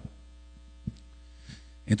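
Steady electrical mains hum in the recording during a pause in a man's talk, with a faint click about a second in; his voice comes back just before the end.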